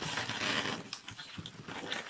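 Latex modelling balloon being twisted and handled, giving a rubbing, hissing sound with a few short sharp squeaks as the rubber turns in the hands.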